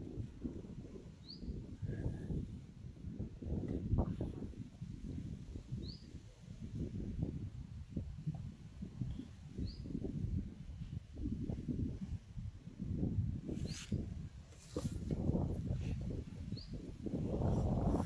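Wind buffeting the microphone in uneven gusts, with a small bird's short rising chirp repeated every few seconds.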